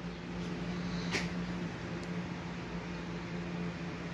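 A steady low hum, with a faint click about a second in.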